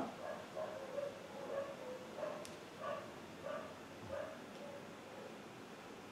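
A dog barking faintly, a string of short barks spaced irregularly.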